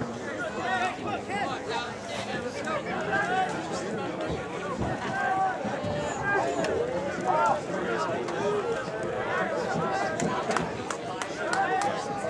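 Background chatter of several overlapping voices in the stands at a baseball game, with no words clear.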